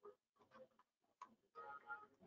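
Near silence with a few faint, short clicks, followed by a brief faint pitched sound near the end.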